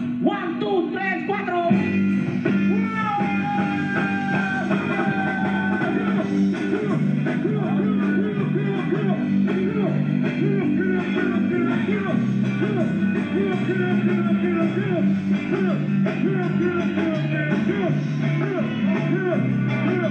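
Live rock and roll band playing an instrumental stretch: electric guitar and drums over a steady stepping bass line, with a long held note in the first few seconds.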